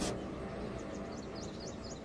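Faint birdsong: a quick run of short, high chirps starting about a second in, over a low steady background hum.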